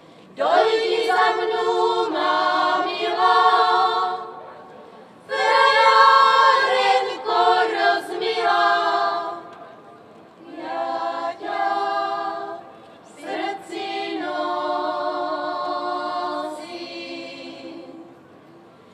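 Women's choir singing a folk song unaccompanied, in several voices, in about four phrases with short breaks between them.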